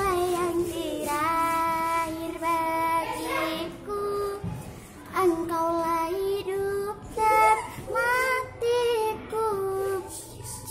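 A young girl singing a dangdut song unaccompanied, holding long notes with a wavering vibrato and sliding ornaments between them, in short phrases broken by breaths.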